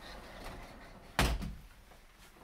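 A closet door closing with one sharp thump just past a second in.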